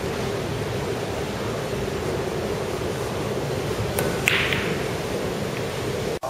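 A pool shot: two sharp clicks about four seconds in, a third of a second apart, cue tip on cue ball and then cue ball on another ball. They sit over a steady hiss and hum of room noise.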